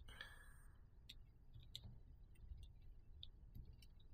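Near silence: room tone with a few faint, scattered light clicks from small parts being handled, a soldered wire joint in a metal helping-hands clamp.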